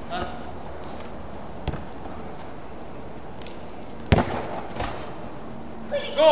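A football being kicked and struck on an artificial-turf pitch: a few sharp thuds, a light one under two seconds in and the loudest about four seconds in, followed by a weaker one.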